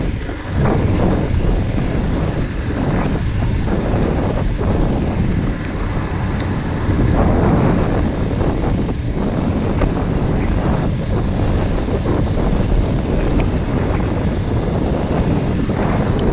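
Suzuki GD 110S single-cylinder four-stroke motorcycle running steadily at cruising speed, under a continuous rush of wind on the camera microphone.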